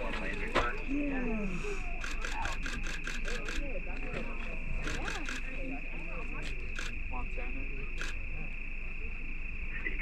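Crickets trilling steadily in one high unbroken tone, with faint voices underneath and a run of sharp clicks a couple of seconds in, then a few more scattered later.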